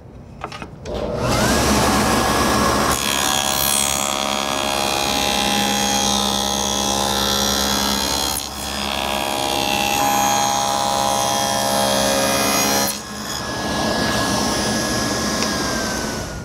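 Table saw starting up, then its blade cutting grooves in solid-wood drawer parts, with a brief easing of the cut midway. After the cut the blade spins on alone, its pitch falling slightly near the end as it slows.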